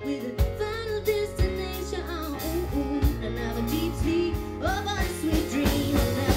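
Live band playing a pop-rock song: female voices singing over electric guitar, bass guitar and drum kit.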